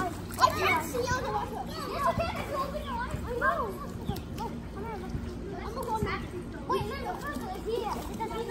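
Several children's voices talking and calling out over one another as they play, without a break.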